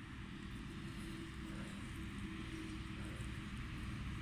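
Faint, steady low outdoor background rumble with a faint hum, and no distinct events.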